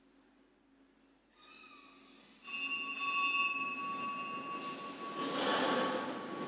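A small bell struck about two and a half seconds in and again half a second later, ringing and slowly dying away, as a sacristy bell signals the start of Mass. Toward the end comes the rustle of a congregation getting to its feet.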